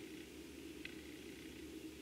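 Quiet room tone with a steady low hum and one faint click a little under a second in.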